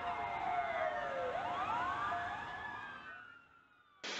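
Intro sound effect of gliding, siren-like electronic tones: a long falling sweep, then rising arcs over a steady tone, fading out about three seconds in.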